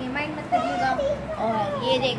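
Young children's voices in playful chatter and vocalising, going on without a break.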